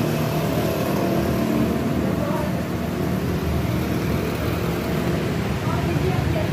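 Steady, loud traffic noise close by: a large coach bus's diesel engine running as it drives slowly past, mixed with motorcycles on the road.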